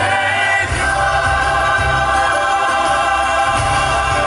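A mixed choir and a male solo singer with instrumental accompaniment singing a hymn, settling onto a long held chord about a second in.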